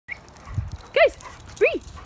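A playing dog gives two short yelps, each rising and falling in pitch, about a second in and again just past one and a half seconds.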